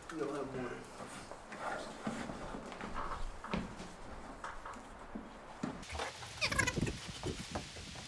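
Electrical cable with a plastic sheath rustling and scraping as it is pulled through and handled, in scattered short strokes with a denser burst of scraping about six seconds in, under faint low voices.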